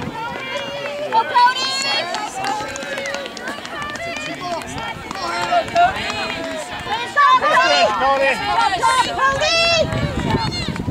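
Several spectators shouting and cheering encouragement at a runner, their voices overlapping. The shouting gets louder in the last few seconds.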